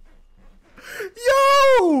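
A man's quick breath in, then a long, high-pitched excited cry of "yooo" that holds its pitch and then falls away at the end.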